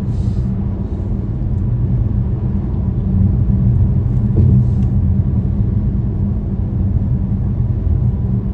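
Steady low rumble of a car driving at highway speed over a concrete bridge deck, heard from inside the car: tyre and engine noise.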